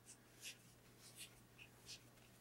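Near silence: room tone with a low steady hum and a few faint, brief rustles.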